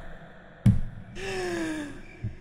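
A single dull thump, then a breathy vocal exhale from a person's voice that slides slowly down in pitch.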